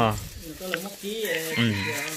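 Domestic chickens clucking, mixed with a person talking.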